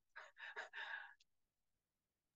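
A few soft, breathy puffs of breath from a woman in the first second, like a sigh through a smile, then near silence.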